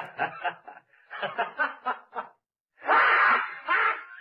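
A person snickering in short, breathy pulses for about two seconds, then a louder burst of laughter near the end.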